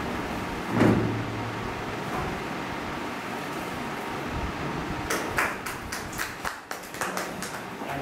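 Steady background hum with a single thump about a second in. In the second half comes a quick run of sharp clicks and crackles.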